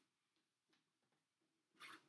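Near silence: room tone, with one short soft noise near the end.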